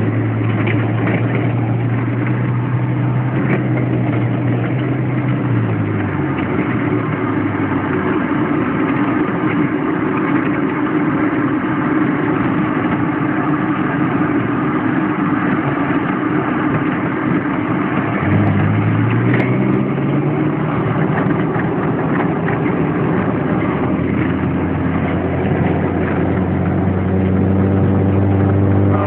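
Mercedes G-Class (Wolf) off-roader's engine running under way, heard from inside the cab over steady road noise. Its pitch falls about six seconds in, then rises again past halfway as the vehicle picks up speed.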